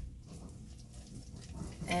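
Silicone spatula stirring a thick glue-and-cornstarch paste in a nonstick pot: faint stirring and scraping, after a soft low thump at the very start.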